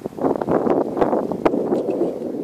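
Wind buffeting the microphone in uneven, gusty rumbles with sharp bursts.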